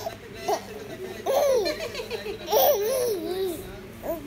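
Baby laughing in high-pitched, wavering bursts: a short one about half a second in, then two longer runs around one and a half and three seconds in.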